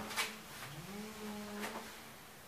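A low, steady hum like a man's voice, held for over a second, with a couple of light clicks as a sock is pulled onto a foot.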